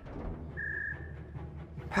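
Computer proximity-alert beep: a single steady high electronic tone lasting about a third of a second, heard about half a second in and again at the very end, repeating roughly every 1.3 seconds. Under it is low, droning film music.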